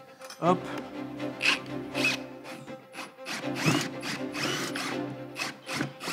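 Ryobi cordless drill running at the base of a shop vacuum. It runs, drops off briefly about halfway through, then runs steadily again.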